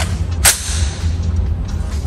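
AR-15 charging handle pulled back and let go, the bolt slamming home once about half a second in: a single sharp clack with a brief echo in the room, over a steady low hum.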